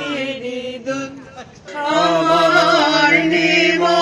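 Slow singing by a small group led by a woman on a microphone, with long held notes. The singing thins out about a second in and comes back in full a little before two seconds.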